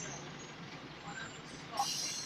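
Steady low-level drone inside a Scania L94UB Floline single-decker bus, with its engine running, and faint passenger voices briefly about a second in and near the end.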